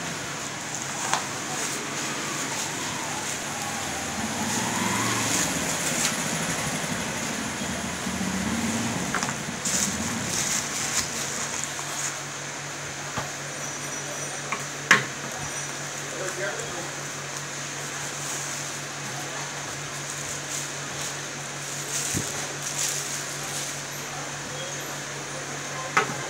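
Shop room tone: a steady low hum under indistinct voices, with scattered clicks and knocks as selfie sticks and their cardboard boxes are handled on a glass counter. The loudest is a single sharp click just past halfway.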